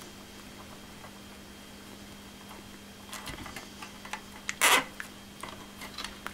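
Quiet handling of insulated wires being gathered into a bundle, with a few small clicks, then a short zip about three-quarters of the way through as a nylon cable tie is pulled tight. A faint steady hum runs underneath.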